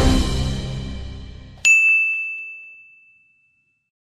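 TV station logo sting: a full musical hit that fades out over the first second and a half, then a single bright chime that strikes sharply and rings away.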